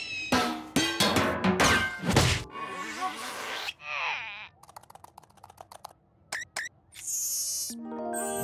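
Cartoon sound effects over the score. A quick run of bangs and thuds with sliding tones fills the first couple of seconds, followed by a wobbly warbling sound. Then comes a quiet stretch of faint rapid ticking with two sharp chirps, and a shimmering sting as the music comes back in near the end.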